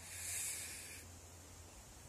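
A short breathy hiss of about a second, most likely a person exhaling, followed by a faint steady low hum.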